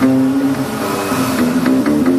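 A live band playing: a melody of held notes changing about every half second, with light percussive clicks coming in during the second half.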